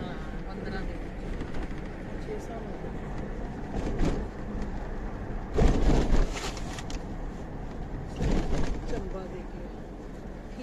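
Steady road and engine rumble of a moving car, with faint voices and three brief loud rushes of noise about four, six and eight and a half seconds in.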